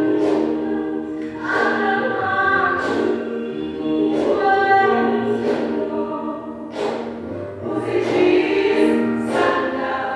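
A choir singing held chords in phrases a few seconds long, with short breaks between them.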